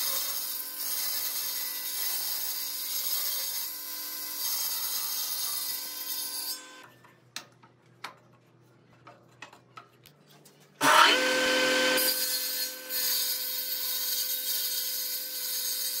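Table saw on a combination woodworking machine running and ripping a pine board lengthwise, a steady motor hum with the hiss of the blade cutting. The sound drops away for about four seconds in the middle with a few light knocks. It comes back suddenly and loud about eleven seconds in.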